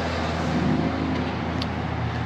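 Steady road traffic noise, an even rushing sound with a low engine hum underneath.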